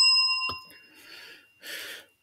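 A single bright bell-like ding rings and fades away over about a second, with a short click about half a second in.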